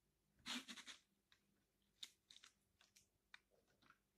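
Faint clicks and light rustles, the loudest a short cluster about half a second in, then a few single ticks: fingers picking soaked coffee beans out of a clear plastic dish of water.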